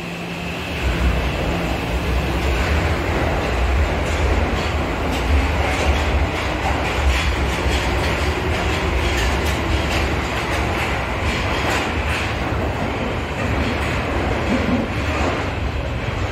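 Tokyo Metro Marunouchi Line subway train pulling out of the station and running past along the platform: a steady, loud rumble of wheels on rail with scattered clicks, echoing in the underground station.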